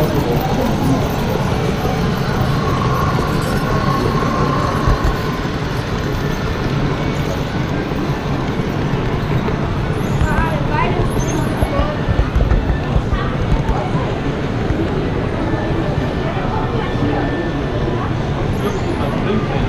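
Steady rolling rumble of an HO scale model train running on its track, heard from on board, with indistinct chatter of visitors around the layout. A few voices stand out briefly just past the middle.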